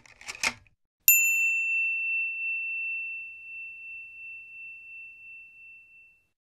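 A single high bell-like chime, struck once about a second in. It rings on one clear pitch and fades slowly over several seconds with a gentle wavering pulse.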